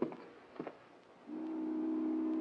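Film soundtrack: a music cue dies away with a sharp click, and after a short lull a low, steady held note begins about a second in and carries on.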